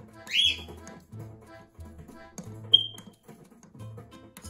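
A cockatiel calls twice over background music: a loud rising chirp just after the start, then a short, sharp whistle near three seconds in, the loudest sound.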